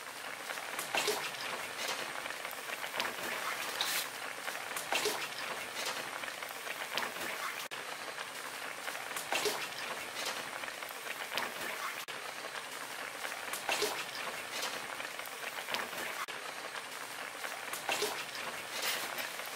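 Large aluminium pot of sujebi soup at a rolling boil on a gas stove: a steady bubbling with many small irregular pops.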